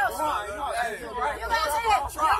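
People talking and chattering.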